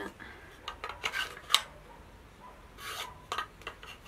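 Handling noise: light rubbing and rustling with a few small clicks as flat phone-stand pieces and a printed card are handled, the sharpest click about a second and a half in.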